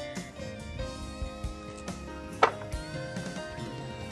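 Background music led by guitar, with one sharp knock of wood on wood about two and a half seconds in as a cut poplar block is set down.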